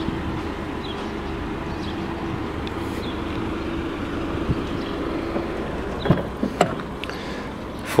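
Steady outdoor background hum with a faint held tone, then a few sharp clicks and knocks about six seconds in as the SUV's rear passenger door is opened.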